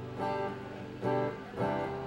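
Acoustic guitar strumming chords, a few strokes each left to ring, in an instrumental gap between sung lines.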